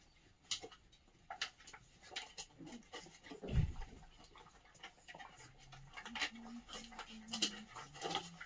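A litter of puppies eating dry kibble from a plastic multi-bowl feeder: scattered small crunches and clicks of food and bowl, with a dull thump about three and a half seconds in. Short, low puppy vocal sounds come in the second half.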